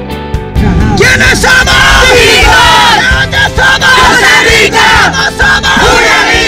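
Background music with a beat; about a second in, a group of people starts yelling together in a team huddle's rallying cry, loud and sustained over the music.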